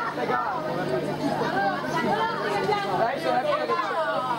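Several people talking at once, a babble of overlapping voices with no single clear speaker, over a steady low hum.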